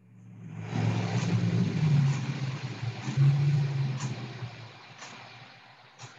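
A rushing noise that builds over about a second, holds, then slowly fades away, over a steady low hum, picked up by a participant's open microphone on a video call.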